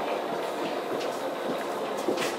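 Steady noise of a passenger train heard from inside the carriage, with a faint click about a second in.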